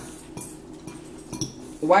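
Metal fork clinking and scraping against a ceramic bowl of food, with a few light, sharp clinks.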